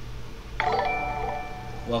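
Live-stream donation alert chime: a bright bell-like jingle of several held tones that starts about half a second in and rings for over a second.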